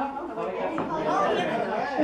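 Overlapping chatter of several people talking at once, too mixed for any words to stand out.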